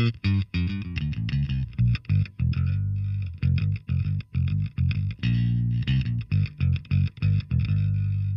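Electric bass played through a Line 6 POD Express Bass on its Punch amp model, a Gallien-Krueger GK-800RB emulation: a busy line of short plucked notes with a few longer ones, ending on a note left to ring out near the end.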